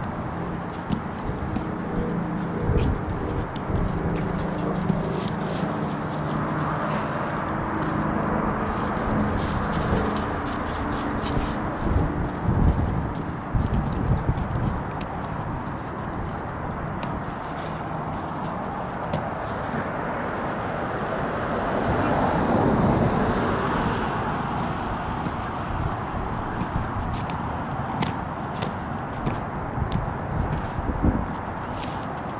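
Footsteps crunching on loose gravel under steady wind noise, with a low whining tone over the first dozen seconds and a louder rush of noise a little past the middle.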